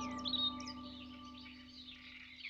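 Small birds chirping in short, quick calls, over a faint steady tone that slowly fades away.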